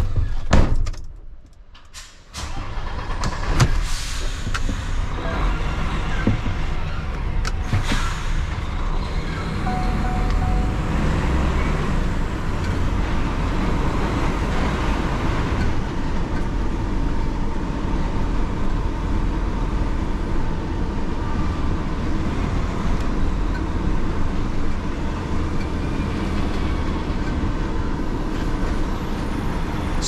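Heavy lorry's diesel engine heard from inside the cab as the truck drives slowly along a yard road, a steady low rumble. A sharp loud sound about half a second in is followed by a short lull before the rumble settles, with a few clicks from the cab.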